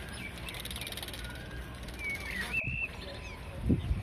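Steady faint outdoor background noise, with a single short bird call a little past halfway through.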